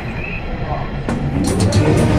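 Street noise: a vehicle's low rumble with people's voices in the background.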